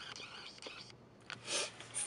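Quiet car-cabin room tone with faint rustling and a few small clicks, then a short breath drawn in near the end.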